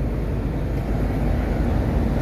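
Steady low rumble with a faint hum from the machinery of a standing passenger train at the platform.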